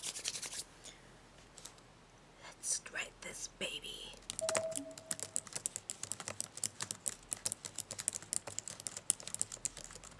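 Fast typing on a computer keyboard: a dense, irregular run of key clicks that starts about halfway in and carries on steadily.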